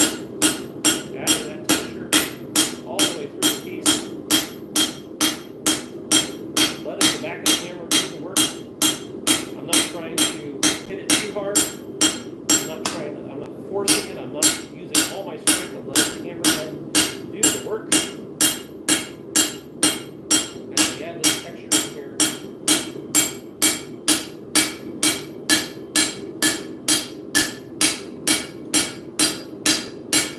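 Hand hammer striking hot steel plate on an anvil, about two blows a second, each with a clear metallic ring. There is a brief pause about twelve seconds in before the hammering resumes. The blows are spreading the steel out.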